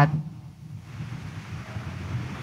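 A congregation rising to its feet in a church: a low, even rumble of shuffling and movement from the pews.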